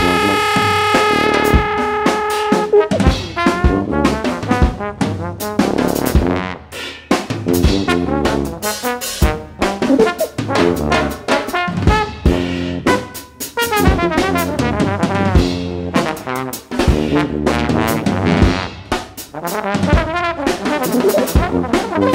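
Instrumental jazz from a brass trio. A held brass note opens, lasting about three seconds. Quick, busy brass lines then weave over drum hits.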